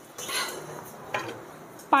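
Kitchenware being picked up off a marble floor and set aside: a short scrape near the start and a light clink about a second in.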